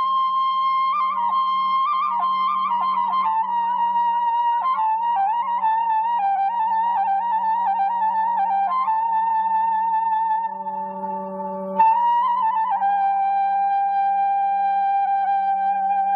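Armenian folk tune played on a flute-like wind instrument over a steady low drone, the melody trilling and ornamented. Near the end it settles onto one long held lower note.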